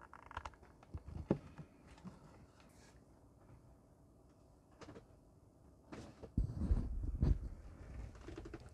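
A few small plastic clicks and some handling as a USB cable is pushed into the port of a Wi-Fi pan-tilt security camera. Then near silence, and about six seconds in a short, rough rumbling sound lasting about a second and a half.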